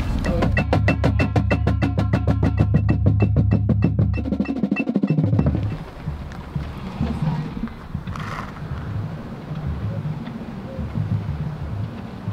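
Drum corps percussion playing a fast, even stream of strokes, about eight a second, over a low hum; it stops about five and a half seconds in, leaving quieter outdoor background with faint voices.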